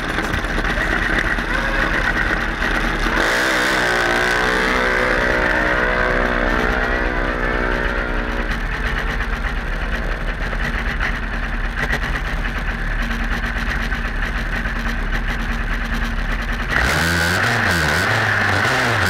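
Junior dragster's small single-cylinder engine idling at the start line, heard up close from a camera mounted on the car, with a wavering engine tone from about 3 to 8 seconds in. Rock music comes in about a second before the end.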